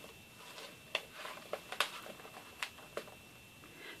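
Faint rustling of paper and plastic notebook inserts being handled and slid under an elastic cord, with a handful of light clicks and taps scattered through it.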